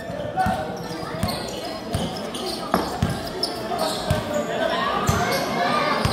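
Basketball being dribbled on a hard court, a series of short bounces at uneven spacing, under the murmur of spectators' voices.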